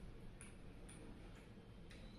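Very quiet eating sounds: a few faint clicks and ticks, about three in two seconds, as rice is eaten by hand from a steel plate.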